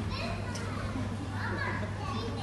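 Young children's voices chattering and calling out, overlapping, over a steady low hum.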